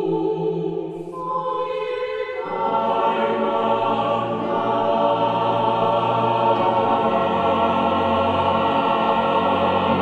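Mixed choir singing the closing phrase of a Korean choral song: voices enter in layers about a second in, then the full choir swells into a loud chord about two and a half seconds in and holds it.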